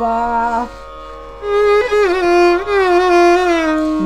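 Violin played in Carnatic style, a phrase of raga Bhairavi: a short held note, a brief pause, then a long note ornamented with small pitch wavers (gamaka) that glides down near the end.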